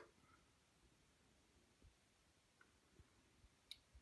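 Near silence: room tone with a few faint, scattered clicks in the second half.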